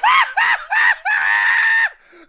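High-pitched human screaming: three short shrieks, each rising and falling in pitch, then one long held scream that stops just before the end.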